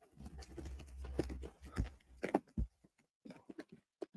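Cardboard shipping box being handled and rummaged through: rustling and scraping with a low rumble, several sharp knocks, then a run of small quick clicks near the end.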